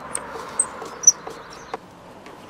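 Plastic front cover of a Rolec EV-ready wallpod being prised open with a screwdriver: a few short clicks and brief high squeaks as the clips let go, over a faint hiss.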